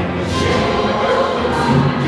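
A large mixed-voice high school show choir singing in full harmony, with its live show band accompanying.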